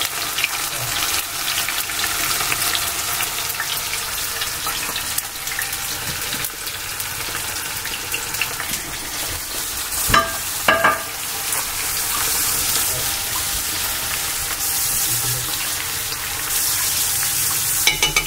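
Cornflour-coated strips of king oyster mushroom frying in hot oil, a steady sizzle, while a metal fork stirs them. The fork gives two sharp clicks against the pan about ten seconds in.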